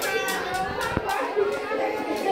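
People clapping their hands in a steady rhythm, about three claps a second, with adults' and children's voices talking underneath.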